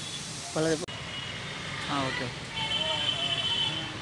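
Short snatches of people talking over steady outdoor background noise.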